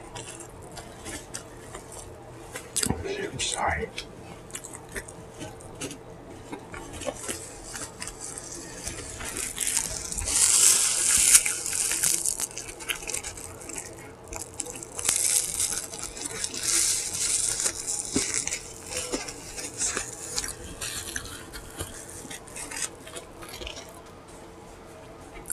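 Paper napkin rustling and crumpling in the hands, in two noisy stretches about ten and fifteen seconds in, with small clicks in between.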